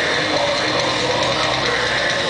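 Live metalcore band playing loud, with distorted electric guitars and drums in a dense, unbroken wall of sound.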